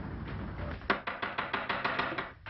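A fast run of sharp hard taps, about six or seven a second, starting about a second in, after a low steady rumble has died away.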